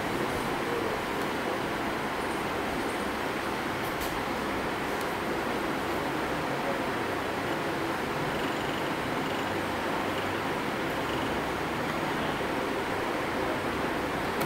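Small DC motor of a bench-top DC motor speed-control trainer running with a steady whir. It is being brought up to about 1200 rpm under closed-loop control with the eddy current brake off.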